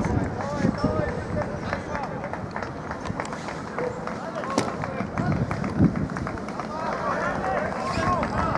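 Rugby players calling and shouting to each other across the pitch, heard from a distance, with the calls coming thicker near the end. Small ticks and knocks run underneath.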